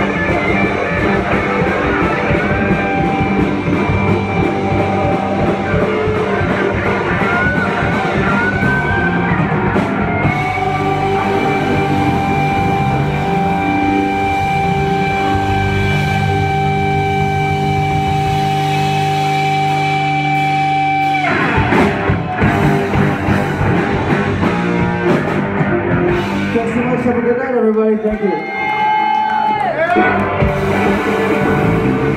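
Live rock band jamming on electric guitars, bass and drum kit. About ten seconds in the band holds one long chord for roughly ten seconds, which cuts off sharply; near the end there are sliding, bending notes.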